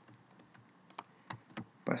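Computer keyboard keystrokes: about four short, sharp key clicks in the second half, the keyboard shortcuts of copying and pasting a block of code.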